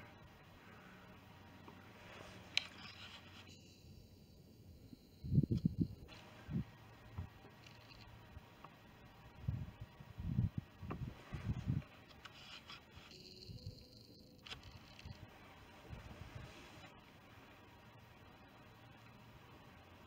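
Mostly quiet, with a scattering of faint low thumps and rubs from the camera being handled and adjusted, bunched in the middle of the stretch.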